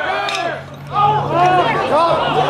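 Several spectators yelling and cheering at a baseball game, the shouting swelling about a second in as the ball is put in play.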